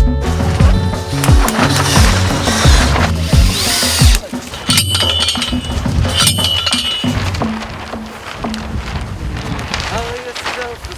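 Background cumbia music with a steady beat for about the first four seconds. It then gives way to live sound: two sharp metallic clangs about a second and a half apart, a post driver striking a steel post, followed by quieter wind.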